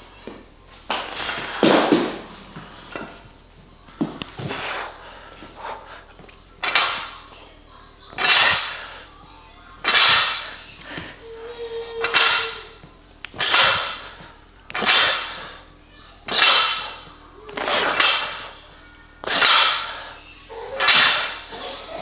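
A man breathing out hard, one forceful exhalation with each rep of a barbell row, about one every one and a half seconds.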